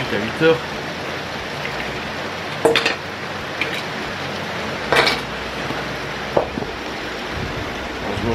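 Three short sharp clicks and knocks from small objects being handled on a table, about three, five and six and a half seconds in, over a steady hiss of rain.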